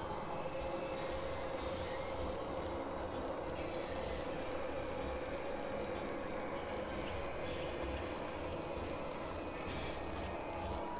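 Dense experimental collage of several music tracks playing over one another, forming a steady droning wash. A held mid-pitched tone and a low, uneven throbbing pulse run through it, with a few high pitch glides about three to four seconds in.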